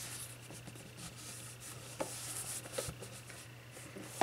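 Faint handling sounds of a cardstock-covered chipboard box being turned in the hands: fingers rubbing on the paper, with a couple of light taps about halfway through, over a low steady hum.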